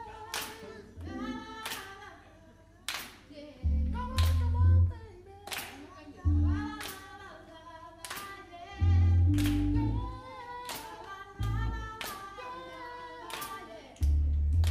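Live band with a female lead singer in a sparse passage: the voice sings a wavering melody over short bursts of low bass notes, with sharp handclaps keeping an even beat about every second and a quarter.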